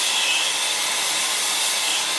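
Air-fuel brazing torch with a number four tip, burning with a steady hiss while its flame is held on a copper pipe joint.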